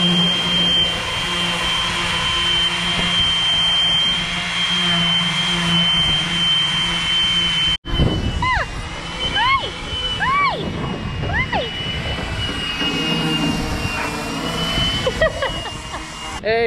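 Electric orbital sander running steadily against a fibreglass boat hull, rubbing down the gel coat: a high steady whine over a low hum. Just before halfway the sound breaks off for an instant. After that the whine goes on fainter under a run of short chirps that rise and fall.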